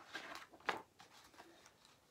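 A picture book's paper page being turned: short, soft rustles with one sharper flick of the page under a second in.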